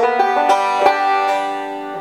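Five-string banjo picking a short lick that slides from A up to B flat, the 2-3 slide whose flat third turns the major pentatonic into the major blues scale. A few picked notes follow and ring out, fading gradually.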